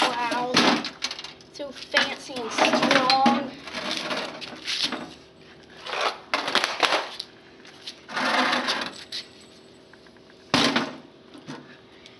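Hard plastic clattering and knocking against concrete as a CRT monitor and computer keyboard are handled, in irregular bursts, with a person's voice calling out without clear words between them.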